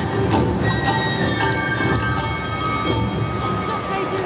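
Traditional Japanese festival dance music accompanying a dance troupe, with struck beats about twice a second and ringing bell-like tones over held high notes.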